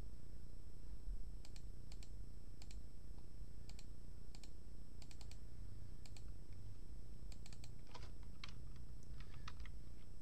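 Computer keyboard typing in short, irregular bursts of keystrokes, over a steady low hum.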